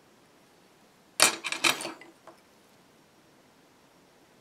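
Small metal hand tools clattering on a hard work surface as one is put down and another picked up: a quick cluster of sharp, ringing clicks about a second in, with one faint tick just after.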